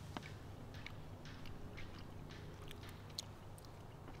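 Faint chewing of soft canned Vienna sausages, with small scattered mouth clicks.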